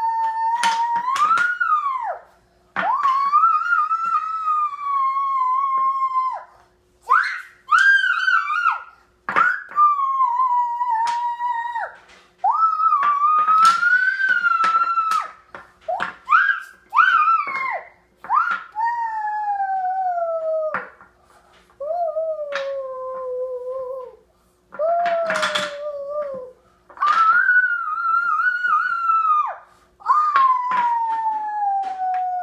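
A series of long, high, howl-like vocal calls, about a dozen in all, each held for one to four seconds and sliding up or down in pitch, with short breaks between them. Sharp clicks of puzzle pieces knocking on the glass table come in between.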